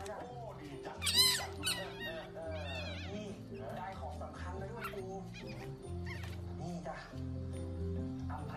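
Background music with a steady, repeating bass line, with a dog's short high-pitched yelps or whines over it, loudest about a second in and again near three seconds.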